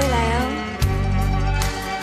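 A woman singing into a microphone over live band accompaniment, with steady bass and sustained chords.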